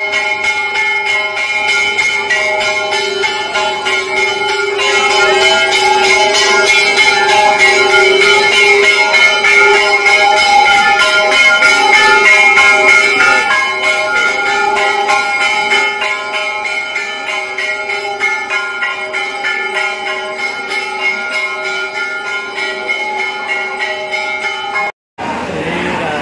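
Temple bells rung rapidly and without a break, a dense clanging ring that swells louder in the middle and cuts off suddenly near the end.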